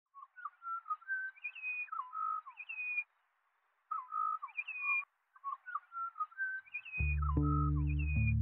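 Butcherbird singing clear whistled phrases, some notes sliding down, in three bursts with short pauses between them. About seven seconds in, the band comes in with low, sustained bass and guitar notes.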